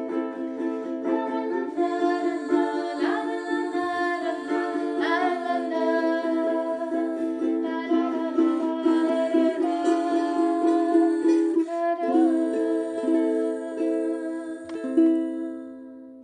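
Ukulele playing steady chords with wordless singing over it. About 15 s in there is a sharp knock, and the sound then fades out.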